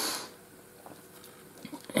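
A short breath in, then quiet with a few faint small clicks near the end.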